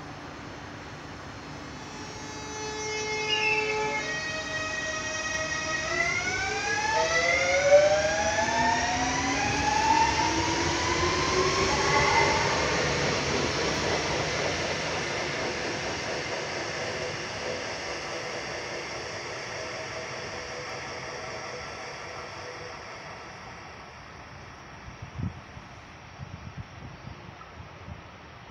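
Renfe Class 465 Civia electric multiple unit pulling out of the station. Its traction motors hum steadily, then whine in several pitches that climb together as it accelerates. It is loudest about eight to twelve seconds in, then the sound fades away as the train leaves, with a few light clicks near the end.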